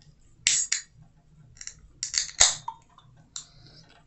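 Fingers working the pull tab of an aluminium beer can to open it: a few short, sharp clicks and snaps, the loudest about two and a half seconds in.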